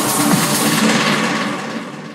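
Techno track in a breakdown with the bass cut out. Over the second half the top end is swept away and the music thins and drops in level.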